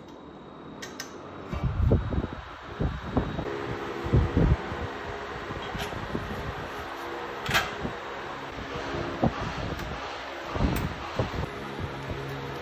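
Knocks, clicks and dull thumps of a steel crash guard and its mounting hardware being handled and fitted against a motorcycle frame, with one sharp metallic click about seven and a half seconds in. A steady hum runs underneath.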